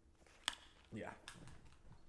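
A sharp click about half a second in, followed by a soft, short vocal sound falling in pitch and a few lighter clicks.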